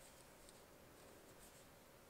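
Very faint rustle of chunky wool yarn sliding over wooden knitting needles as stitches are worked, with a few soft ticks, barely above near silence.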